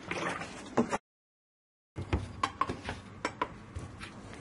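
Liquid pouring from a plastic jug into a steamer's metal dish, cut off suddenly by about a second of dead silence. Then scattered sharp plastic clicks and knocks of the steamer units being handled.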